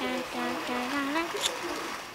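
A voice humming a few short, low notes in a row, with a sharp click about one and a half seconds in.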